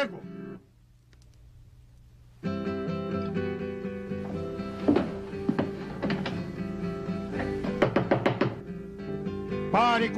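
Acoustic guitar strummed hard and unmusically, an infernal noise. The guitar breaks off about half a second in and starts again about two and a half seconds in. Loud knocks on a wooden door cut through it around five seconds in and again near eight seconds.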